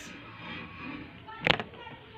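A pause in speech: faint room tone with faint voices in the background, broken by one sharp click or knock about one and a half seconds in.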